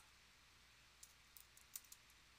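Faint keystrokes on a computer keyboard: a few soft key clicks in the second half, over near silence.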